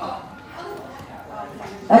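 Faint voices of people in the room, with a short yelp-like cry at the start.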